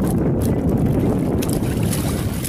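Steady low rumble of wind buffeting the microphone on an open boat.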